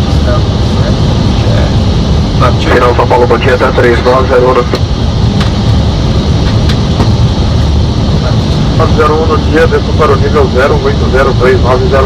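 Steady, loud rumble of an Airbus airliner's flight deck in flight: airflow and engine noise. Voices come through twice, around three seconds in and again from about nine seconds.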